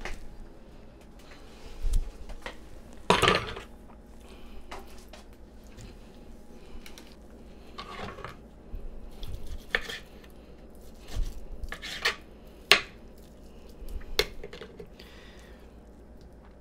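Knife and fork clicking and scraping against a plastic cutting board as a cooked pork rib is cut, in scattered short knocks, the loudest about three seconds in and again near the end.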